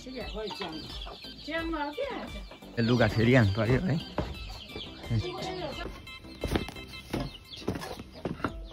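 Chickens clucking, with a low voice briefly about three seconds in and a few sharp knocks near the end.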